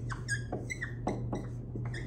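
Dry-erase marker squeaking on a whiteboard as an equation is written: a quick series of short squeaks, one per pen stroke, over a steady low hum.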